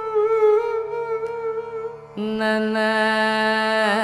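Carnatic vocal music: a male voice holds long, gently wavering notes with violin accompaniment, and about two seconds in a louder, steady sustained note sets in.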